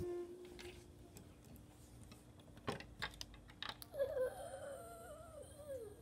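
Plastic toy pieces click lightly a few times on a glass tabletop. For the last two seconds a child's voice hums a wavering tone that drops away at the end.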